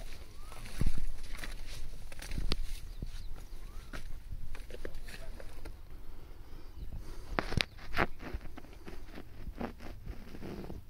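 Irregular scuffs, rustles and clicks close to the microphone over a low wind rumble, with two sharper knocks about three quarters of the way through.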